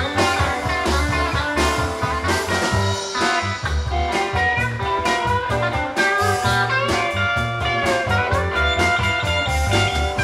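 Live blues-rock band playing an instrumental break: an electric lead guitar plays a solo with bending notes over a steady drum kit beat and rhythm guitar.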